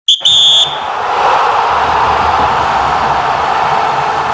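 Logo-intro sound effect: two short, high electronic beeps in quick succession, followed by a long, steady rushing noise like static.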